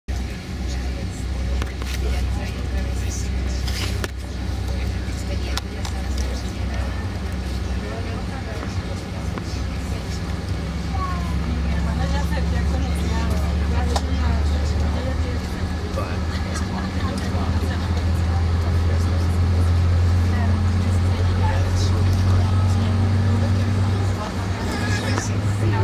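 Jet airliner's engines and cabin noise heard from inside the passenger cabin while taxiing: a steady low drone that grows louder from about halfway through.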